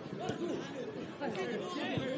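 Spectators in a stadium's stands talking, many voices overlapping into a general chatter.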